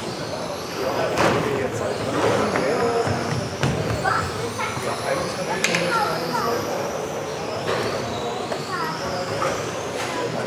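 Several electric RC racing cars on a track: a high motor whine from the field that keeps rising and falling in pitch as the cars speed up and slow down.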